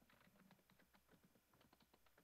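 Near silence with faint, rapid clicking of a computer keyboard being typed on, picked up over a video-call microphone.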